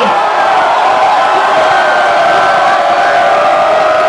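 A concert crowd cheering and shouting together, a loud, steady mass of many voices.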